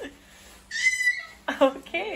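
A baby's high-pitched squeal, about half a second long, about a second in, followed by short voiced sounds.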